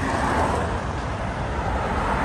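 Road traffic: a car passing close by on the adjacent road, a steady rush of tyre and engine noise.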